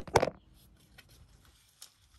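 Handling knocks: two quick, sharp knocks at the very start, then quiet apart from a few faint clicks.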